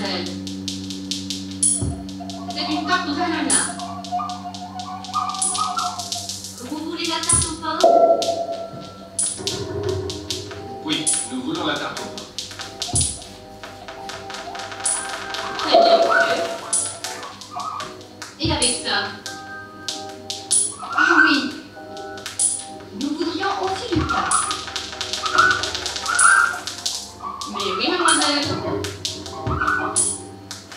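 Live experimental electronic music from laptops and electronic gear: a steady high tick about once a second and a low thump every five or six seconds. Over these run gliding, warbling pitched sounds and chopped voice-like samples, with a low hum that cuts off about a second in.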